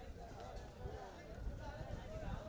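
Faint, distant voices with irregular low thumps underneath.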